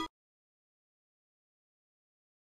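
Silence: the playback of a hi-hat beat cuts off abruptly right at the start, and nothing follows.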